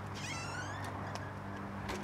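A front door's hinges squeal in high, gliding creaks as the door swings, then the door shuts with a sharp knock near the end, over a steady low hum.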